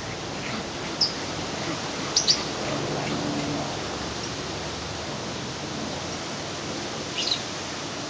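A few short, high-pitched bird chirps over a steady hiss: one about a second in, a quick pair just after two seconds, and one more near the end.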